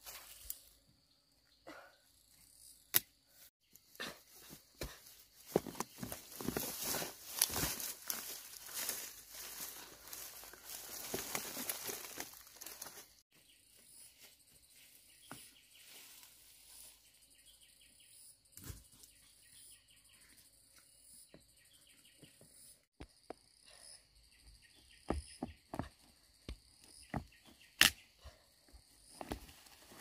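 Rustling of leaves and stalks with crackles and twig snaps as cassava plants are handled and pulled from the soil by hand. From about halfway, a high chirping call repeats about once a second in the background, and sharp snaps come again near the end.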